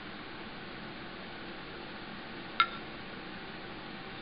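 A single short metallic clink as a steel woodturning tool is handled, ringing briefly, over a steady low room hiss.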